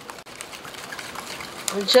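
Wire whisk beating a thin, syrupy egg-and-sugar pie filling in a large mixing bowl: a soft swishing with quick, irregular clicks of the tines against the bowl. A voice comes in near the end.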